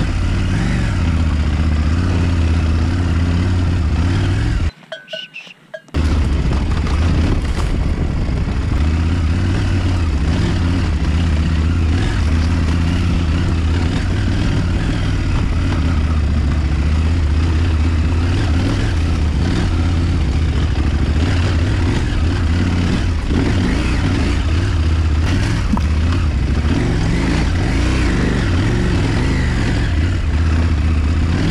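KTM 790 Adventure S's parallel-twin engine running steadily under way on a rocky dirt trail, over a steady rush of wind and tyre noise. The sound cuts out for about a second about five seconds in.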